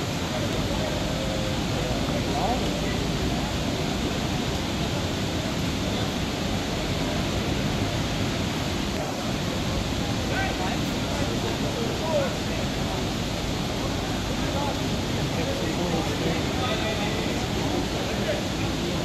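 Steady rush of river water pouring through a sluice gate on a weir, with faint voices in the distance.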